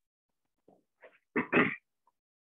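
A man clearing his throat: faint throat noises, then two harsh, loud rasps about a second and a half in. His voice is giving out, and he has been coughing on and off.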